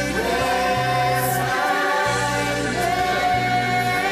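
Choir of many voices singing a slow song in overlapping parts, with long held notes and steady low notes beneath.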